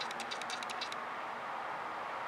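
A quick run of about ten light, sharp clicks in the first second, then a steady faint hiss.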